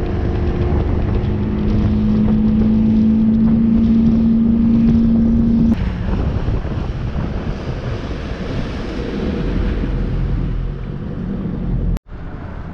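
A fishing boat's outboard motor running under way, its tone rising slightly, then throttled back abruptly about six seconds in, leaving a lower running sound. Wind buffets the microphone throughout.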